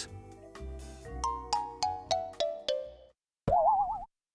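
Closing jingle music: a run of short plucked notes stepping down in pitch, about three a second, then a brief gap and a short wavering tone near the end.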